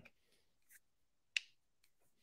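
Near silence, broken by one short, sharp click about one and a half seconds in.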